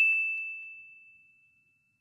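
A single high bell-like ding sound effect ringing out and fading away, gone about a second and a half in.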